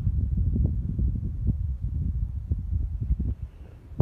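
Wind buffeting a phone microphone outdoors: an uneven low rumble that rises and falls, with a few brief knocks.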